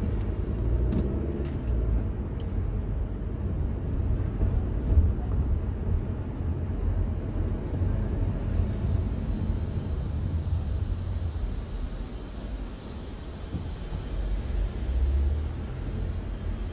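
Steady low rumble of a car's engine and road noise heard from inside the cabin while it moves slowly in congested traffic. A faint thin high tone sounds briefly a second or so in.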